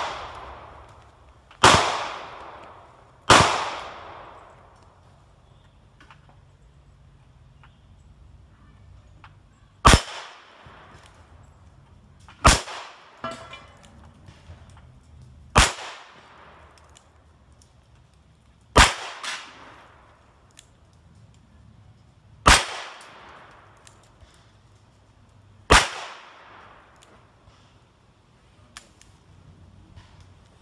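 Ruger GP100 revolver firing single shots at a slow, deliberate pace, about nine loud reports spaced one and a half to six seconds apart, each followed by a long echoing tail. A few fainter sharp cracks come between some shots.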